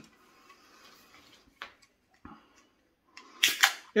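A beer can being opened: a couple of faint clicks as the ring-pull is worked, then a short, loud hiss of escaping gas near the end.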